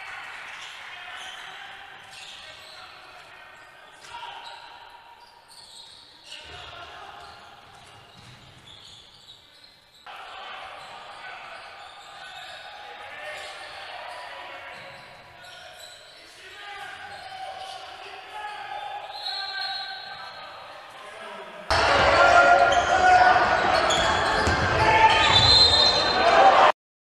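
Live basketball game sound from the court: a ball bouncing and voices echoing in a large hall, across several short clips. It gets much louder for the last few seconds.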